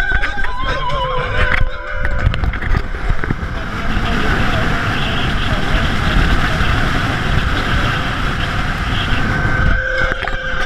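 Voices inside a moving car, then, from a couple of seconds in, a loud steady rush of wind and road noise as the camera is out in the airstream beside a moving car's open window, with a man yelling. Music comes back in just at the end.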